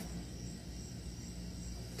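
Quiet steady outdoor background: a low hum under a faint, high, steady insect chirring, with no distinct events.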